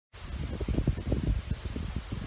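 Wind buffeting a phone's microphone outdoors: an uneven, gusting low rumble.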